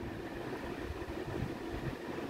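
Steady low hum and hiss of background room noise.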